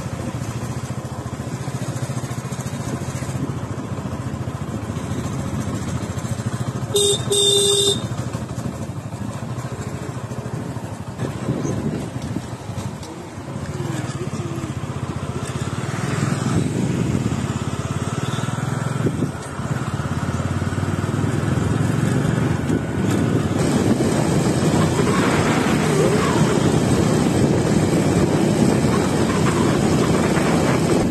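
A motorcycle on the move: engine running under steady road and wind noise on the microphone, which grows louder in the second half as the speed picks up. A vehicle horn sounds once, about a second long, some seven seconds in.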